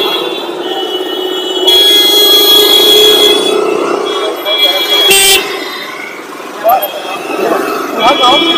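Vehicle horns honking in a traffic jam: a faint held horn at the start, a long loud blare from about two to three seconds in, and a short toot about five seconds in, over a steady engine hum.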